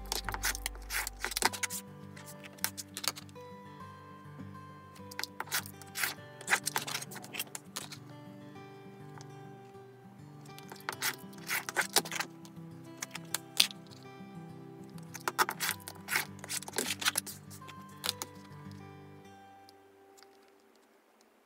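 Soft background music, over which a rotary cutter rolls through layered cotton fabric along a ruler on a cutting mat in four short crackly bursts, trimming the patchwork units to size.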